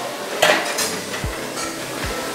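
Metal dishes and cutlery clinking. One sharp, ringing clink comes about half a second in, followed by lighter clinks and a few dull knocks.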